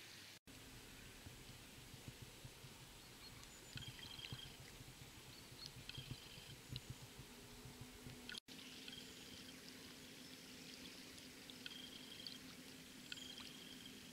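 Near silence: faint flowing river water with a low steady hum and a few faint high chirps now and then.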